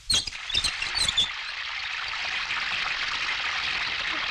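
A rusty valve wheel on a water tanker's outlet pipe is forced open with three sharp metallic squeaks in the first second or so. Water then gushes steadily out of the pipe.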